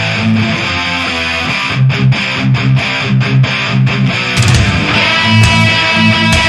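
Heavy metal band recording with distorted electric guitar riffing over bass and drums, in repeated low chugging pulses. The sound opens up fuller and brighter about four seconds in.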